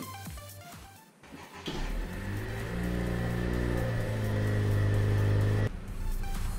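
Car engine running steadily: the 1.5-litre turbocharged four-cylinder of a 2017 Honda Civic EX-T. It comes in about two seconds in after the music fades, grows a little louder, and cuts off suddenly near the end.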